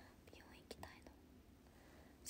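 Near silence: room tone with a faint whisper and a few soft ticks.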